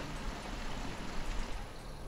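A steady, noisy rumble with hiss, heaviest in the low end, with a few sharper surges a little after the middle and the high end starting to thin out near the end.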